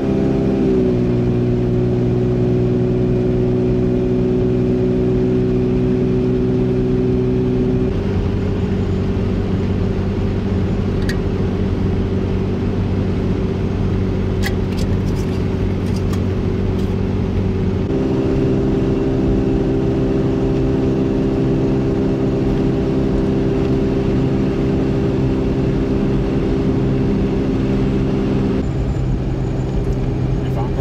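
Steady in-cabin drone of a Toyota Land Cruiser driving at highway speed, engine and tyre noise together. The drone rises in pitch at the start, then holds a steady hum that changes its note about eight seconds in and again about ten seconds later.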